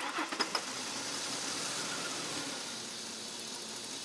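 1997 Ford Explorer's 4.0-litre single-overhead-cam V6 idling steadily with the hood open. The engine has a rough-idle random misfire caused by an EGR valve stuck open with carbon.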